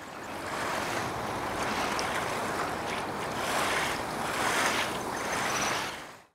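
A steady rushing noise, with a couple of faint ticks.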